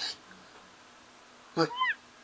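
A cat's single short meow near the end, rising then falling in pitch, coming straight after a spoken word.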